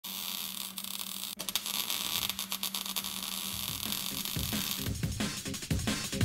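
Crackling static with a steady electrical hum, like a neon sign buzzing. A drum and bass beat with heavy bass comes in about four and a half seconds in and builds.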